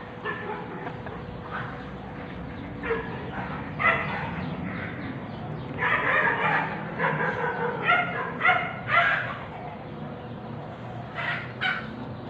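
Short, pitched animal calls repeated in bursts: a few scattered ones, a quick run of them in the middle, and two more near the end.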